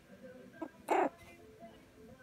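A very young puppy gives one short, high cry about a second in.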